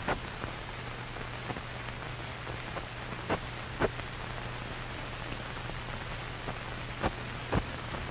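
Steady hiss with a low hum and a few scattered clicks and pops: the surface noise of an old film soundtrack.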